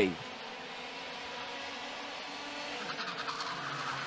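IAME X30 125cc two-stroke kart engines running on track, heard faintly as a steady engine tone, growing a little louder near the end as karts come closer.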